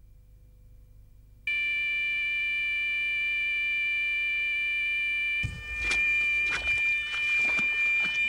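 Electronic gripper bite alarm sounding one continuous high-pitched tone that starts suddenly about a second and a half in: a fish is running with the bait and taking line. From about halfway, rustling and a few knocks of movement through bankside vegetation sound over the tone.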